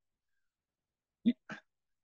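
Near silence for about a second, then a man briefly speaks a single short word, followed by a quick soft breath-like sound.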